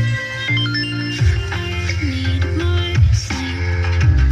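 Music received on an FM radio tuned to 107.1 MHz (Magnética FM). A deep bass line changes note every second or two under higher melody lines.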